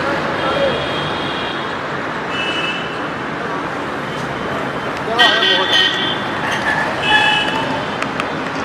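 Road traffic noise with vehicle horns honking about four times, the first held longer at the start and the rest brief, with people's voices in the background.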